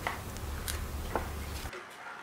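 A metal ladle stirring soup in a stainless-steel pot, tapping the pot in a few light clicks over a low steady rumble that cuts off suddenly near the end.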